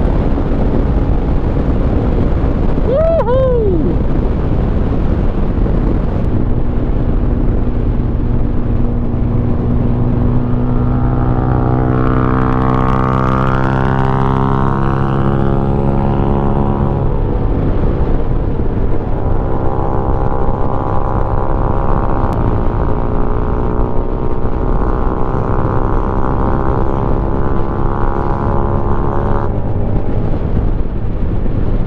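Benelli VLX 150 single-cylinder motorcycle being ridden at steady highway speed: a constant engine drone over steady wind and road noise.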